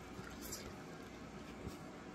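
A man biting into and chewing a slice of pizza, heard faintly as a few soft mouth clicks over quiet room tone.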